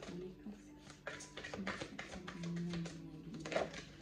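A deck of oracle cards being shuffled by hand, a run of soft quick card clicks, over soft music with held low notes.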